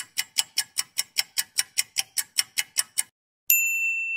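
Clock-ticking sound effect, about five sharp ticks a second for three seconds, then stopping. After a short pause a single bright bell ding sounds and rings on, slowly fading.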